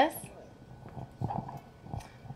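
A woman's voice finishing a word, then a pause of low outdoor background noise with a few faint, soft knocks.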